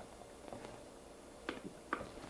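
Quiet room tone with a couple of faint short clicks, about one and a half seconds in and again just before the end.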